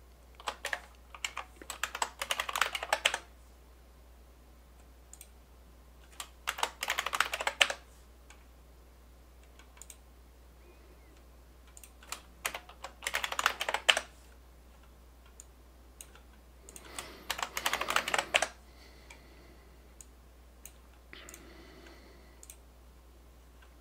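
Computer keyboard typing in four quick bursts of keystrokes a few seconds apart, with a few faint single clicks between them, over a low steady hum.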